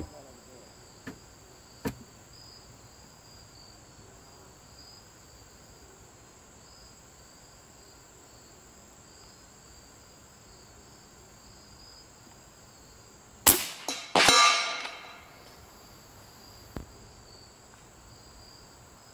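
A single shot from a .357-calibre Bully big-bore pre-charged pneumatic air rifle fitted with a silencer, a sharp crack about two-thirds of the way through, followed within a second by a second sharp sound that trails off. Insects buzz steadily throughout.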